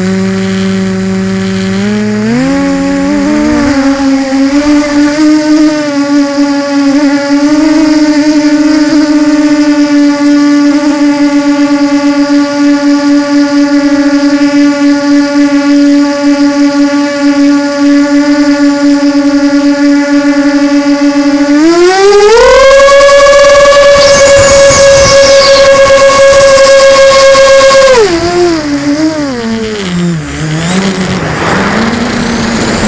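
QAV250 racing quadcopter's brushless motors and propellers whining, heard up close through its onboard camera. The whine rises in pitch as it lifts off and then holds steady in a hover. About three-quarters of the way through the pitch jumps sharply as it is throttled up hard to climb, holds high for about six seconds, then drops back.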